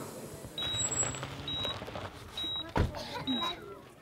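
Medical patient monitor beeping a short, high tone about once a second, steady and even. Faint voices murmur underneath, with a single dull thud a little before the end.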